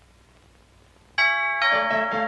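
Bell-like chimes strike suddenly about a second in, after a quiet hiss. Several ringing notes sound together, and more are added in quick succession, all ringing on.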